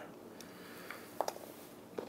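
Quiet handling of a plastic fishing plug on a plastic cutting board, with one faint click a little past a second in, over a low steady room hum.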